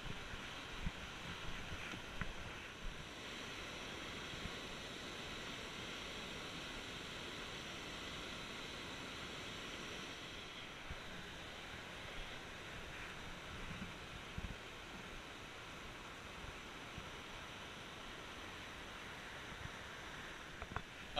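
Steady rushing of the North Fork Skokomish River's white-water rapids, with a few faint knocks in the first few seconds.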